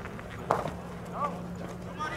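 A pitched baseball arriving at home plate with one sharp smack, followed by a brief shout from the field.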